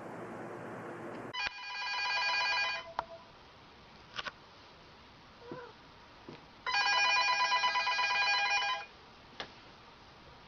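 Landline telephone ringing twice with a fast, warbling ring. The first ring starts about a second and a half in and the second follows about four seconds later, each lasting roughly two seconds, with faint clicks in between.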